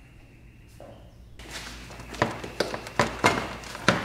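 Air intake duct being worked loose and pulled off the throttle body: rubbing and rustling of the duct, with several sharp knocks and clacks in the second half.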